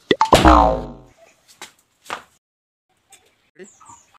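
A cartoon-style comedy sound effect: a loud 'boing' that slides quickly down in pitch over a deep thud, lasting about a second near the start. A couple of faint ticks follow.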